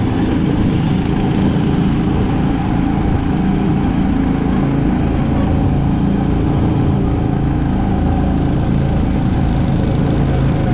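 Small gasoline engine of a go-kart running steadily on track, heard from on board the kart.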